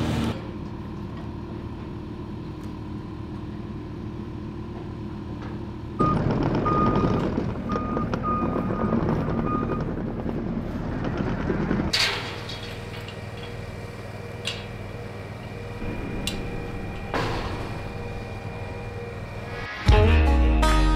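A vehicle engine running steadily. A louder, rougher stretch in the middle carries a series of short, high beeps, like a reversing alarm.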